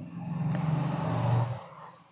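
A motor vehicle passing, its low engine hum swelling and then fading away about a second and a half in.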